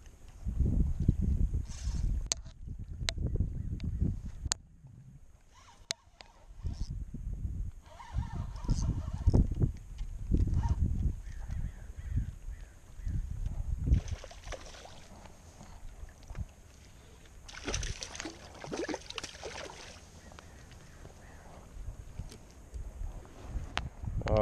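A hooked largemouth bass splashing and thrashing at the shoreline as it is landed, among irregular low bumps of handling.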